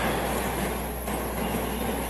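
Steady background hiss with a low hum underneath: the room tone and noise floor of the broadcast recording, with no distinct event.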